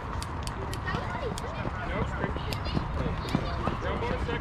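Distant, overlapping chatter and calls of children and adults around a youth baseball field, with scattered sharp light clicks.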